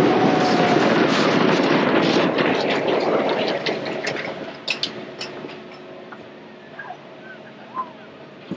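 Ride train rolling on its track among the coasters: a loud rolling rumble for the first three seconds or so that then fades away, followed by scattered sharp clicks and squeaks.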